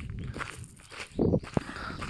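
Footsteps on a gravel path, a few uneven steps over low rumbling noise on the phone's microphone, with a sharp click about one and a half seconds in.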